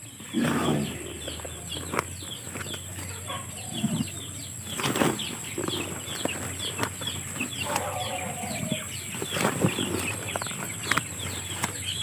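Rice bran poured scoop by scoop from a plastic scoop into a plastic basin, each pour a short soft rush, with birds chirping throughout.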